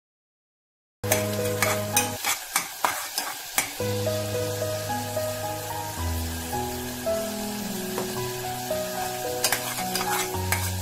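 After a second of silence, a steel spatula scrapes and taps against a steel pot as a masala paste is stirred. The clicks come thickest in the first few seconds, over the steady sizzle of the paste frying in oil until the oil separates. Background music plays under it.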